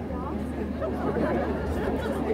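Audience chatter: many people talking at once close by, with no single voice standing out.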